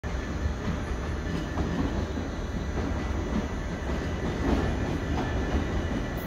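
Steady low rumble of a Long Island Rail Road M7 electric commuter train running in on the rails as it approaches the platform.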